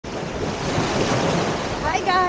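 Small waves washing in over the sand and around the legs in shallow surf, a steady noisy rush, with wind blowing across the microphone. A woman's voice starts just at the end.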